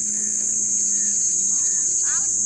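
Steady, high-pitched drone of insects, with faint children's voices near the end.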